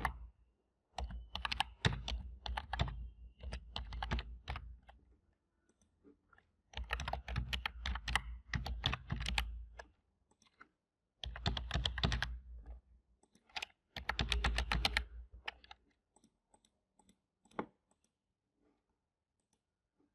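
Computer keyboard typing: rapid key clicks in four bursts with short pauses between them, then a single click near the end.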